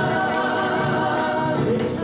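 Argentine folk vocal group singing in harmony, several voices holding long notes with vibrato.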